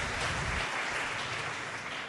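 Audience applauding, a dense patter of many hands clapping that slowly tapers off toward the end.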